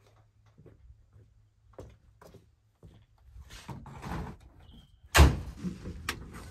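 Light clicks and knocks of gear being handled at a pickup truck, then one loud slam a little after five seconds, a truck door or hatch being shut.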